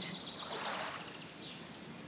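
Soft, steady background hiss of a nature soundscape, with a faint bird chirp or two.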